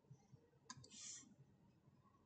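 Near silence, broken by a single faint click about two-thirds of a second in, followed by a brief soft hiss.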